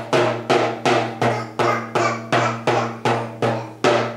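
A small toy drum beaten with a stick in a steady, even beat of about two and a half strikes a second, each hit leaving a low ring.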